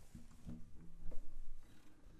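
Soft taps and rustles with brief low tones from an acoustic guitar being handled and settled just before playing, loudest about a second in.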